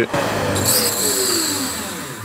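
Wood lathe turning a wooden box base with its lid pushed on, wood rubbing on wood with a hum that falls in pitch as the lathe slows. The flange was cut a little too small, so the lid spins on it instead of gripping.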